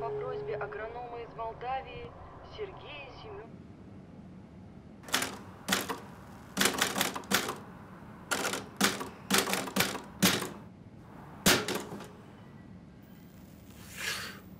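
A typewriter being typed on in short, irregular bursts of keystrokes, starting about five seconds in and lasting some seven seconds. Before it, in the first three seconds, there is a faint wavering voice.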